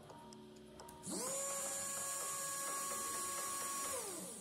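RC car brushless motor, driven through its ESC from an Arduino Nano, spinning up quickly about a second in and then running at a steady speed with a high whine. Its pitch starts to fall at the very end as it slows down.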